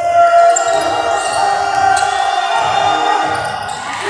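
A basketball bouncing on a hardwood court during play, repeated low thuds, under steady arena music and crowd noise.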